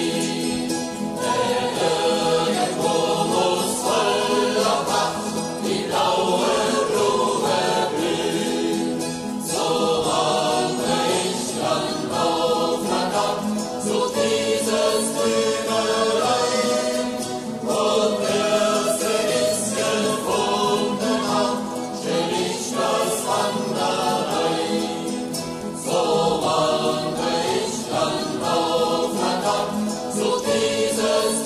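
A choir singing a German Wandervogel hiking song in phrases of a few seconds each, with short breaths between them.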